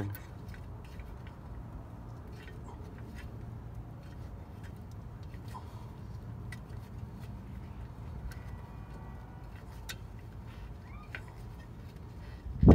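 Faint, irregular small metallic clicks from a truck's drum brake adjuster being turned by hand to extend it, which is stiff to turn, over a low steady hum.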